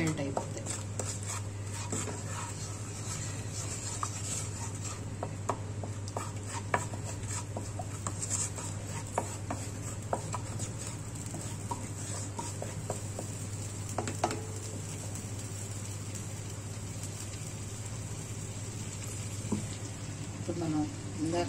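A flat spatula stirring and scraping spices through melted butter in a nonstick pan, with a light sizzle and scattered sharp taps of the spatula against the pan. A steady low hum runs underneath.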